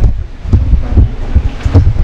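Loud, uneven low rumble of air and handling noise on a handheld microphone held close to the mouth.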